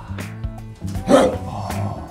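A man making a short dog-like bark about a second in, over background music.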